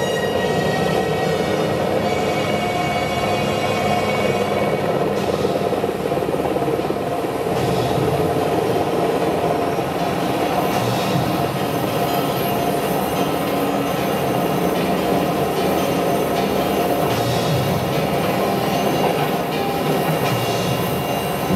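Stage soundtrack played over outdoor loudspeakers: a loud, steady, unbroken drone of held tones with no beat, sounding like a train running.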